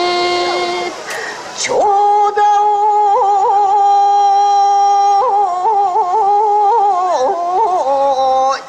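Recorded Japanese song played over a PA: one long held melody note with small wavering ornaments from about two seconds in to about five seconds, then a shorter wavering phrase.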